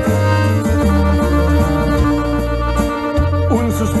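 Gabbanelli five-switch button accordion playing a norteño melody over a backing track with a steady bass line. Singing comes in at the very end.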